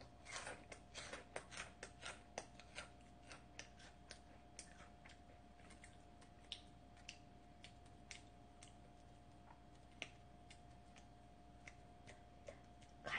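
Crisp snacks crunching as they are chewed close to the microphone: a quick run of sharp crunches in the first few seconds, then scattered single crunches.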